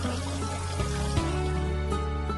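Tap water running onto pork belly slices in a metal colander as they are rinsed, under steady background music; the water sound thins out near the end.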